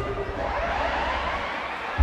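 Crowd in a large hall shouting and cheering, several voices gliding up and down in pitch.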